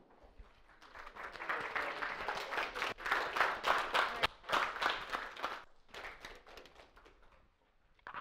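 Small audience applauding at the end of a talk. The clapping builds about a second in, then thins out and dies away over the last few seconds.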